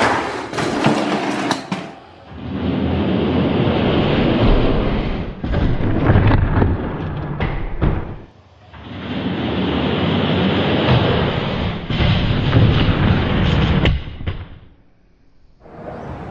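Die-cast Hot Wheels monster trucks rolling and clattering down a plastic track, heard at full speed for about two seconds. Then come two stretches of about six seconds each of a duller, lower rumble with knocks, which sound like the same run replayed slowed down.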